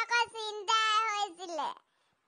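A high-pitched cartoon character's voice in drawn-out, sing-song phrases, its pitch falling away at the end of the last phrase before it stops near the end.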